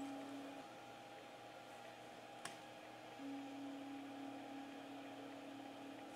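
Very quiet room: a faint steady electrical hum, with one small sharp click about two and a half seconds in.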